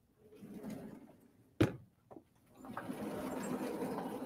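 Chalk writing on a blackboard. A short scratchy stroke comes first, then a sharp tap of the chalk about a second and a half in, then a longer run of scratchy strokes near the end.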